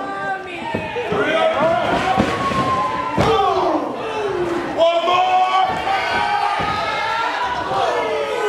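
Shouting voices of a small crowd in a hall, broken by about five sharp slaps and thuds of wrestlers' blows and bodies hitting the ring, the loudest a little past the middle.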